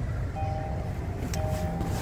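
A 2021 Kia Soul's interior warning chime: a two-note tone of about half a second that repeats once a second while the driver's door stands open, over a low steady rumble.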